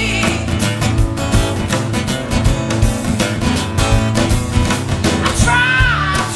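Live blues band playing: strummed acoustic guitar, electric bass and drum kit in a steady groove. The singing voice comes back in near the end.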